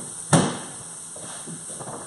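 A salmon fillet laid into a hot, dry frying pan: one sharp slap about a third of a second in, followed by a faint sizzle.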